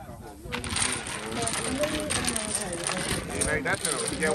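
Domino tiles clattering against each other and the wooden board as they are shuffled: a dense run of small clicks that starts about half a second in and keeps going.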